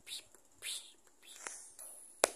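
Faint whispering from children on a video call: a few short, breathy bursts with no voiced words, and a small click about a second and a half in.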